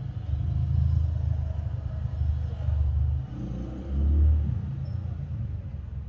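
A low, uneven rumble that swells and fades, loudest about four seconds in.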